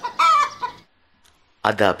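A single short chicken cluck near the start.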